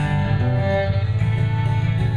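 Live country band playing a short instrumental passage between sung lines: bowed fiddle over strummed acoustic guitar and bass guitar.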